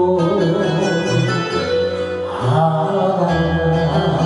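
Enka ballad sung by a solo voice over a karaoke backing track, one sung lyric line giving way to the next.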